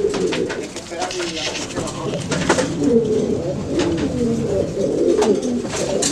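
Many pigeons in a loft cooing together, a steady overlapping chorus of low, wavering coos, with a few sharp clicks.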